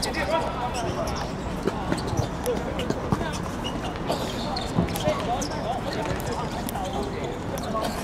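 A football being kicked and bouncing on a hard outdoor court, heard as a few sharp thuds scattered through, with players' voices calling in the background.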